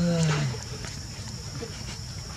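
A single short, low voiced call near the start, rising then falling in pitch over about a second, followed by faint background noise with a steady high thin whine.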